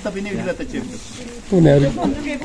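Several people talking at once in the background, with one louder voice about one and a half seconds in.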